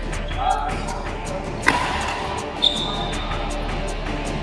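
Badminton rally on an indoor court: two sharp racket-on-shuttlecock hits about a second apart, the first the loudest, the second followed by a short high squeak, over steady background music.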